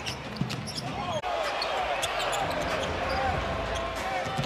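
Live basketball game sound on an arena hardwood court: a ball bouncing and sneakers squeaking over a steady crowd murmur. The sound changes abruptly about a second in.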